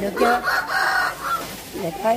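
A loud bird call lasting just over a second, rising at the start and then held steady.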